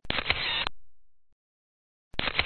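Photo booth camera shutter sound as a picture is taken: a click, about half a second of shutter sound ending in a second click, then a short fading tail.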